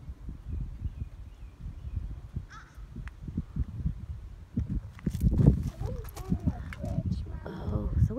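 Low, gusty rumble of wind on the phone's microphone, with faint voices talking from about five seconds in.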